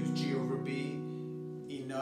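Acoustic guitar, capoed at the fourth fret, with a strummed chord ringing on and slowly fading away.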